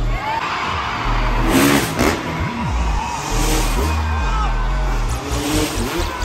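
Dirt bike engine revving in two loud surges, about a second and a half in and again around three seconds, over loud music with a heavy bass beat.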